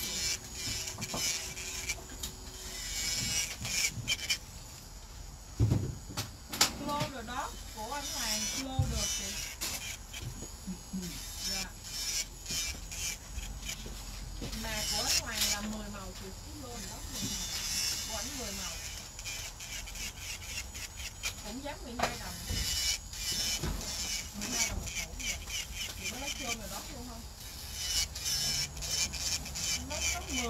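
Electric nail drill with a Tornado carbide bit filing and shaping an acrylic nail, under background talk, with scattered light clicks.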